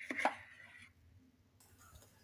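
Metal spoon scraping briefly against a stainless steel bowl as it scoops up thick white chocolate applesauce, with a short metallic ring, all within the first second.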